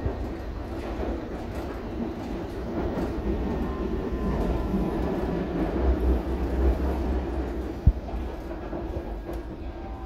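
A London Underground S7 Stock train heard from inside the carriage while running along the track: a steady low rumble of wheels on rail with a faint motor whine. There is one sharp knock about eight seconds in.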